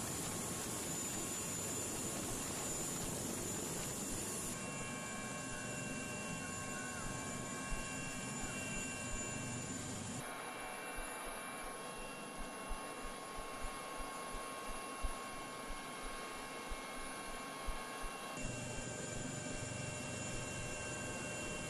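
Helicopter engine and rotor noise, a steady rushing sound with a few constant whine tones above it. Its character changes abruptly about four seconds in and again about ten seconds in, and in the middle stretch irregular low rotor thuds come through.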